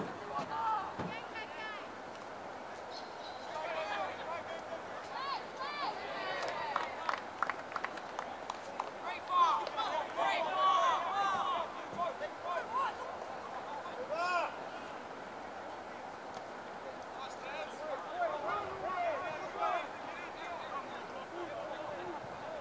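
Scattered, unintelligible shouts and calls from players and spectators across an open rugby league field, busiest in the middle, with a few short sharp clicks about a third of the way in.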